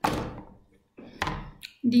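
A sudden dull thump that fades within half a second, then a second short knock about a second later; a woman's voice starts near the end.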